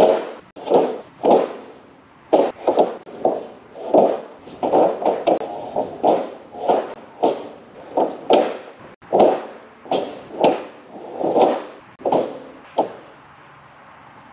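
Pressure-treated 2x8 lumber boards knocking and clattering against each other and the steel trailer frame as they are laid out one after another, about two wooden knocks a second, stopping near the end.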